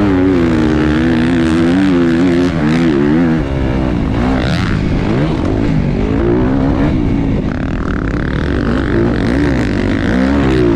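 Motocross bike engine running hard around a track, its pitch rising and falling again and again as the throttle is opened and closed, with a steady rush of noise underneath.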